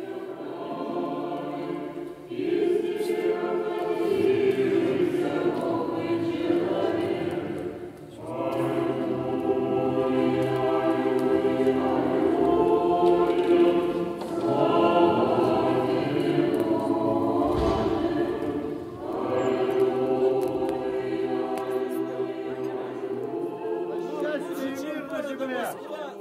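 Russian Orthodox church choir singing unaccompanied liturgical chant in long sustained phrases, with brief breaks between phrases about every five to six seconds.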